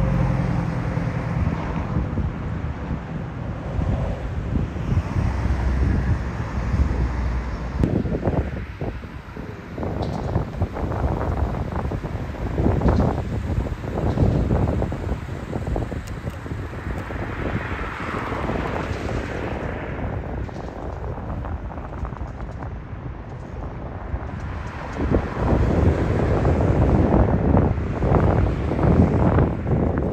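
Wind buffeting the microphone in uneven gusts, over the sound of passing road traffic, with a vehicle engine heard near the start.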